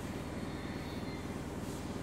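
Low, steady rumbling drone with a fine fluttering texture: electronic tape part of a contemporary piece for alto saxophone and tape.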